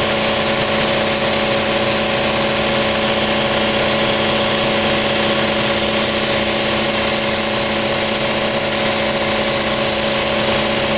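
Siphon-feed air spray gun hissing steadily as it sprays paint, over a constant motor hum.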